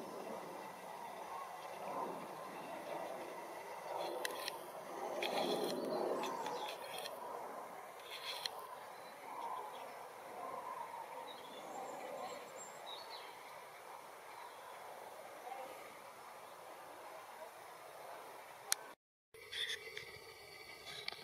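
A migrating flock of common cranes calling overhead, faint calls over a steady background noise. The sound breaks off for a moment near the end.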